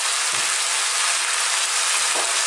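Onions, potatoes and tomatoes frying in sunflower oil in a pan, giving a loud, steady sizzle.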